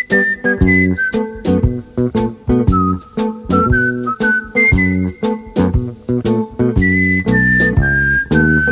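Background music with a steady beat: a whistled melody over plucked guitar and bass.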